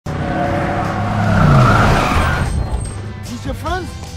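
A car driving fast with its tyres squealing in a skid, loudest about one and a half seconds in and fading by halfway through.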